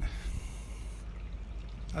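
A man breathing in audibly for about a second in a pause between spoken phrases, over a steady low rumble.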